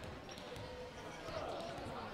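Faint gymnasium ambience: distant voices of players and a ball bouncing on the hardwood court, heard in a large, echoing hall.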